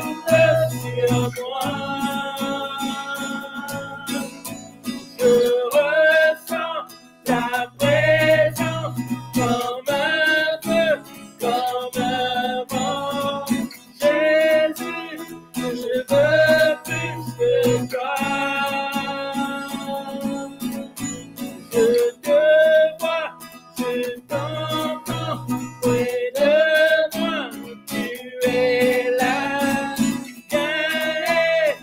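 A man and a woman singing a worship song together to a strummed acoustic guitar, with some long held notes.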